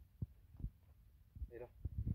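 Mostly quiet, with about four soft, low thumps spread irregularly through the two seconds. A man says a single short word about halfway through.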